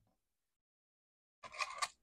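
Dead silence for over a second, then near the end a short burst of crinkling, like hard plastic packaging being handled.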